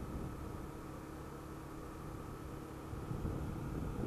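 Honda CBX 250 Twister motorcycle's single-cylinder engine running at cruising speed along with wind and road noise, a steady low rumble that grows a little louder near the end.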